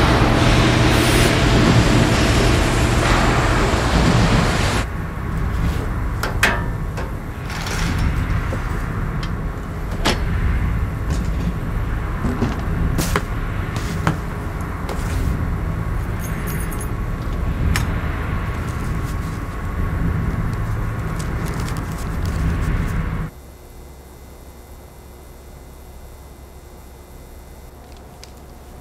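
Machine-shop noise: machinery running with a steady low hum, loudest in the first few seconds, with scattered sharp clicks and knocks. About 23 seconds in it cuts off abruptly to a much quieter room with only a faint hum.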